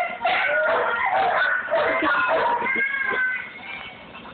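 Several cats meowing at once in overlapping, rising and falling cries, growing quieter near the end.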